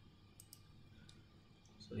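Faint computer mouse clicks over quiet room tone: two quick clicks about half a second in, then a few fainter ones, while a window is opened on screen.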